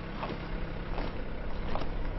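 Low steady engine hum of a slow-moving hearse under an even outdoor hiss, with soft knocks at a slow, regular marching pace, about one every three-quarters of a second.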